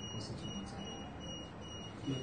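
Electronic alarm beeping: a rapid, even run of short, high-pitched beeps, about five in two seconds, over a steady low background noise.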